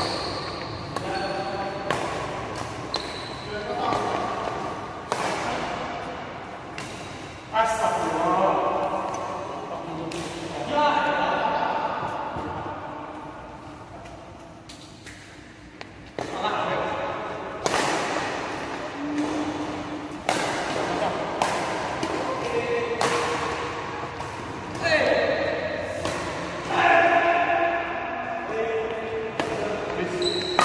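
Badminton rallies: rackets striking a shuttlecock again and again, each hit a short sharp crack ringing out in a large hall.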